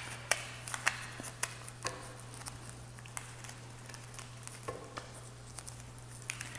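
A deck of tarot cards being shuffled by hand: irregular soft taps and flicks of the cards, with a few sharper clicks.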